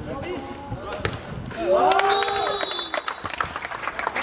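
Footballers shouting during play, with one long loud call about two seconds in, and a few sharp thuds of the football being kicked.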